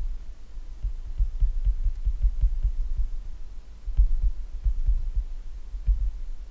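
Irregular low thuds and rumble from handwriting with a stylus on a tablet, the pen strokes carried through the desk into the microphone, with a few faint ticks of the pen tip.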